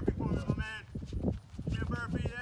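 Sneakers squeaking and scuffing on a hard tennis court as players shuffle sideways, with short high squeaks and quick knocks of feet.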